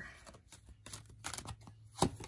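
Deck of Lenormand cards shuffled by hand: a faint run of light card flicks and snaps, with a sharper snap near the end.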